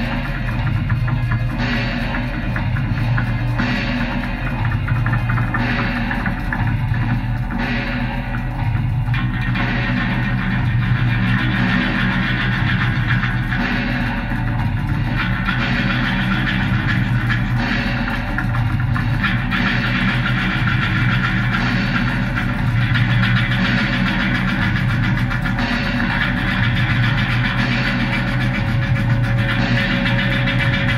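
Improvised experimental rock jam by a live band: a dense, steady wall of instruments over a low pulsing bass and a constant low hum.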